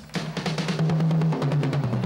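Drum kit played solo: a fast roll of rapid, even strikes across the toms, stepping down to a lower-pitched tom about one and a half seconds in, the drums' ringing carrying on after the roll.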